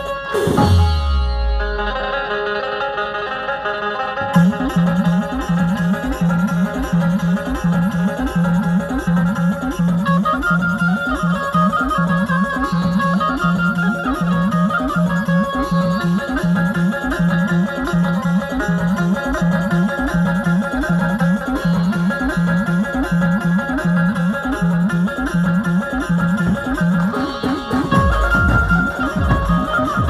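Chhattisgarhi dhumal music played live on an Indian keyed banjo (bulbul tarang), plucking a melody over a steady, fast beat from a Roland electronic drum pad struck with sticks. It opens with a falling swoop, and the beat comes in about four seconds in.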